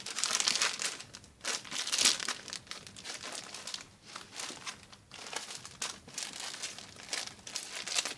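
Plastic packaging of packaged children's T-shirts crinkling and rustling as it is handled and set down, in irregular bursts that are loudest in the first two seconds.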